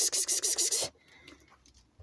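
A woman calling sheep with a rapid, hissing "kıs kıs kıs", about eight short calls a second, which stops about a second in.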